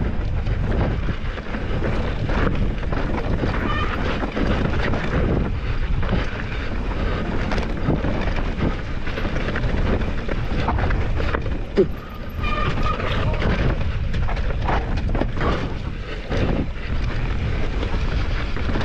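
Wind buffeting the action-camera microphone while the Deviate Claymore mountain bike's tyres run over dirt and rock, with constant rattles and knocks from the bike on the rough descent.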